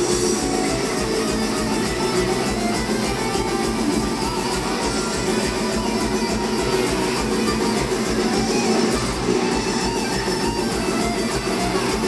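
A live metal band playing an instrumental passage: electric guitars over a drum kit, loud and steady, heard from the crowd at a club show.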